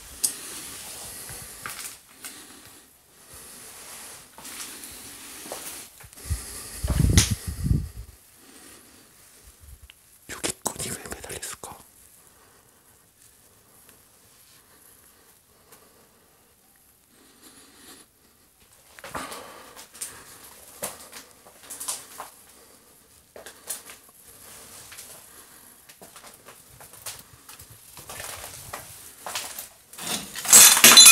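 Quiet whispered speech over the rustle and scattered knocks of someone moving about a cluttered room, with one heavier knock about seven seconds in.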